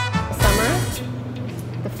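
Swing-style background music with brass cuts off at the start. A brief stretch of voice follows, then a low steady hum.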